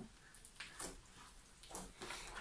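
Homemade glue slime being stretched and squeezed by hand, giving a few faint squishes.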